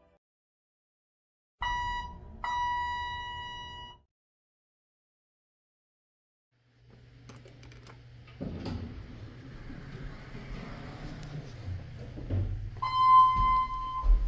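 Two electronic chime strokes near the start, each a clear tone that rings and fades. After a silent gap, a low steady hum and a knock, then a single electronic arrival chime about a second long near the end from the Dover electronic hall lantern of a 2008 ThyssenKrupp/Vertical Express hydraulic elevator. One stroke signals a car going up.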